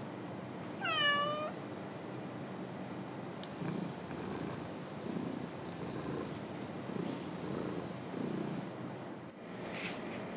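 A domestic cat meows once about a second in, a short call that falls and then levels off, followed by several seconds of low, uneven rumbling like purring.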